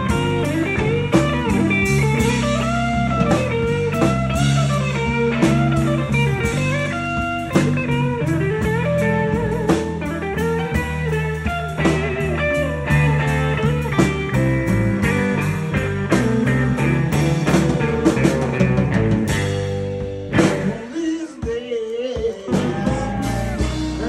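Live blues-rock band: a lead electric guitar, a red semi-hollow body fitted with a Bigsby vibrato, plays a solo full of string bends over bass and drums. Near the end the low end briefly drops away.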